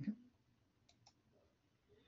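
Near silence broken by two faint computer mouse clicks about a second in, advancing a presentation slide.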